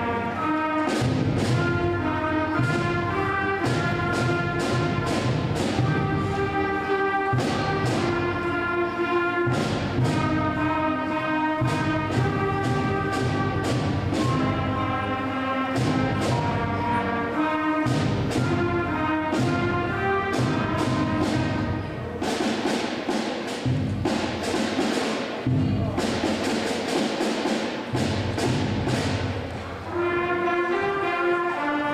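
Sixth-grade concert band playing a piece: trumpets, clarinets and flutes holding notes over a steady drum beat, with heavier percussion filling the last several seconds. Many of the players are in their first year of band.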